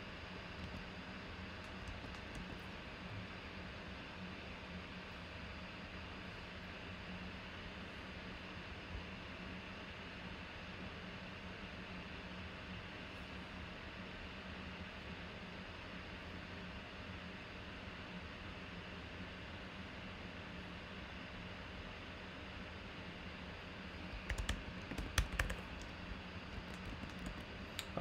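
A steady low hum, then a burst of computer keyboard typing and clicks near the end.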